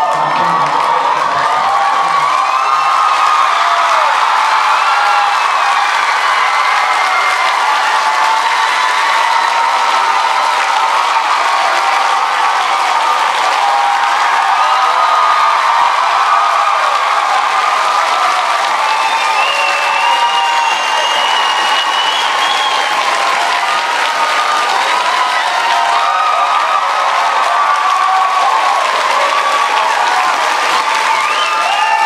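A large audience applauding and cheering, with steady clapping and many whoops and shouts that run on without a break.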